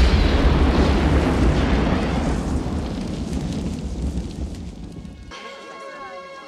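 Deep rumble of a large explosion and the fire after it, dying away over about five seconds. Near the end it cuts off suddenly, leaving quieter music with held notes.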